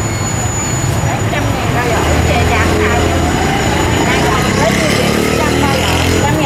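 Indistinct chatter of several voices over a steady low engine rumble from passing traffic, which gets louder about two seconds in.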